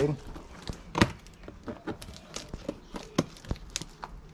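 Scissors cutting open a cardboard box: a run of sharp, irregular snips and clicks, the loudest about a second in.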